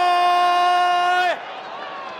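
A male TV football commentator's long, held shout of "Goal!", sustained on one pitch for over a second before falling away. After it come fainter stadium crowd noise and background hum.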